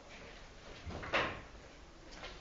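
A single short noise about a second in, fading out with echo in a large bare room: something handled at a trash bin lined with a plastic bag.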